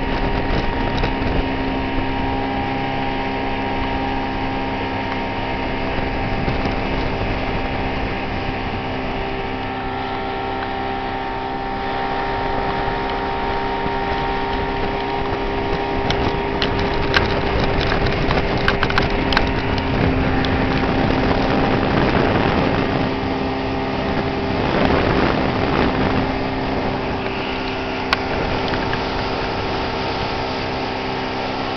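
A 1973 Mercury 125 hp two-stroke outboard running steadily at speed under load, towing a tube, with wind on the microphone and the rush of the wake. Its pitch drops slightly about two-thirds of the way through, and there are a few light clicks a little past the middle.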